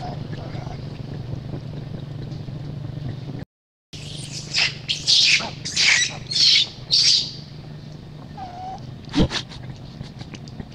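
Infant long-tailed macaque crying: a run of about six shrill, high-pitched screams packed into some three seconds, starting just after a brief cut in the sound. A single sharp knock comes near the end.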